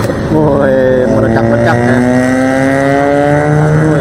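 A vehicle engine accelerating: its note dips briefly, then climbs steadily in pitch for about three seconds and cuts off just before the end, over a low rumble of wind on the microphone.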